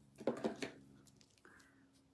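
Faint handling of a deck of cards: a few soft taps and a brief rustle as the deck is lifted and held up.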